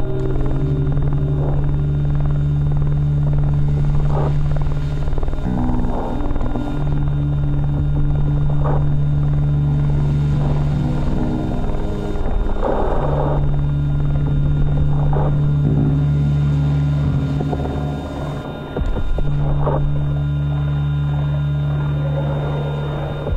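Experimental drone music from treated saxophones, laptop and sound sculptures: low held tones that change pitch every few seconds with short breaks, with sparse clicks and knocks over them.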